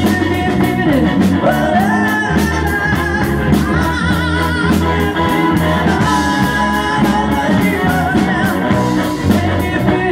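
Live rock band playing: keyboards, electric guitar, bass and drums with steady cymbal strokes, and a singing voice carrying the melody.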